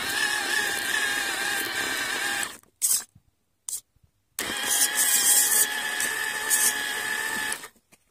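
Small electric gear motor of a homemade RC tractor whining as it drives, in two spells of a few seconds each with two short blips between, starting and stopping abruptly.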